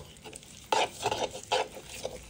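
A metal spoon stirs a thick yogurt-and-cream marinade in a wooden bowl. About two-thirds of a second in, a run of wet stirring strokes begins, a few each second, with the spoon scraping against the bowl.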